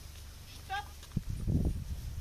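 A sheep bleating once, a short wavering call, followed by a low rumble in the second half.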